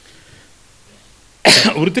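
A man coughs once, loudly and close to the microphone, after a second and a half of quiet, and goes straight on into speech.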